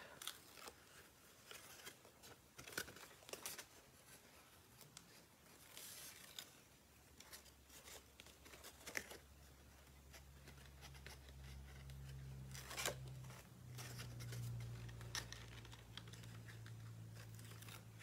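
Backing strips being peeled off double-sided tape on paper flaps: faint, scattered peeling and paper rustles. A low hum comes in about seven seconds in.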